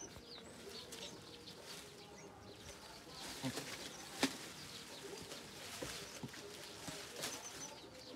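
Faint birds chirping outdoors: scattered short high chirps over a quiet background, with a few sharp clicks, the loudest about four seconds in.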